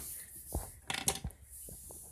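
Several light clicks and taps, a few in quick succession, over a faint steady hiss.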